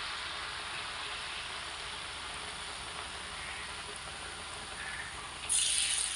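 Batter-coated potato wedges deep-frying in hot oil in a kadai: a steady sizzle that grows louder and brighter near the end.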